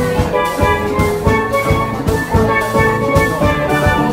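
Instrumental cafe music: bright, pitched melody notes over a steady drum beat.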